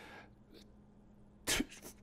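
Near silence in a pause of a man's talk. About a second and a half in comes a short, sharp breath noise from him close to the microphone, then a fainter one.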